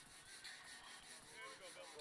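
Near silence: faint outdoor ambience with faint, distant voices about halfway through.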